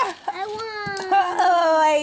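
A single long, drawn-out vocal cry, held for more than a second and a half and slowly falling in pitch, with a couple of faint sharp clicks about a second in.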